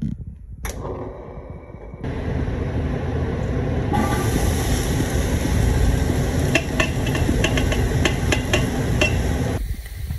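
Diced onions and green peppers sizzling in a stainless steel pot, the sizzle growing louder about two seconds in and again about four seconds in, with sharp crackles through the second half.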